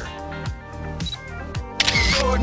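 Background music with a camera shutter sound effect: a few sharp clicks.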